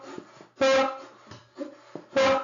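Background music with a strummed guitar: one chord rings out a little over half a second in, then fainter notes follow.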